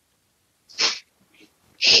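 A single short, sharp breath noise close to a headset microphone, about a second in. A woman's voice starts speaking near the end.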